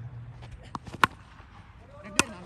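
Two short, sharp knocks about a second in, a faint one and then a louder one, over a quiet outdoor background, from a tennis-ball cricket delivery being played.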